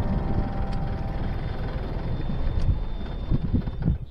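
Farm tractor engine running steadily with the rotary tiller attached and the tractor standing still, with a few louder low bumps near the end.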